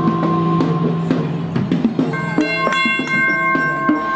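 Percussion ensemble music: several long ringing tones held throughout, with sharp struck hits scattered over them and higher ringing tones joining about halfway through.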